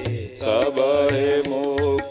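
Devotional chant sung to tabla accompaniment: the voice holds long, steady notes after a short pause near the start, over regular low drum strokes.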